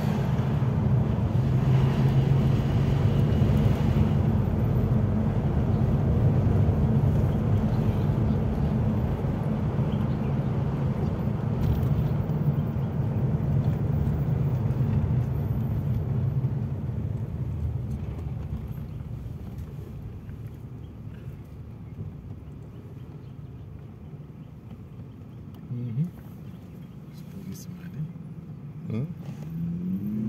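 Car engine and road noise heard from inside the cabin while driving, a steady low hum that quietens over several seconds from about halfway through as the car slows down.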